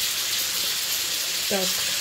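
Sliced zucchini, mushrooms and onion sizzling as they fry in olive oil in a pan: a steady hiss.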